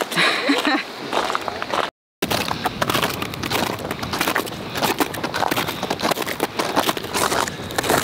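Steel crampons crunching into glacier ice with each footstep, a dense, irregular run of crisp crunches and crackles. The sound cuts out completely for a moment about two seconds in, and the crunching runs on after the break.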